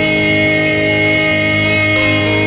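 Three voices, a man and two women, holding the final chord of a gospel song in harmony, sustained steadily without a break.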